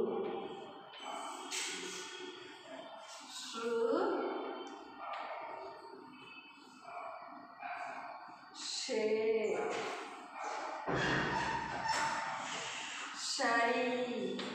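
A woman's voice slowly sounding out Hindi syllables that begin with 'sh' (sha, shi, shu), each a short hiss followed by a held vowel, a few seconds apart. There is a brief burst of noise about eleven seconds in.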